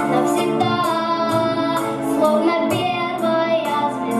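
A boy singing into a microphone over a recorded backing track with a steady beat.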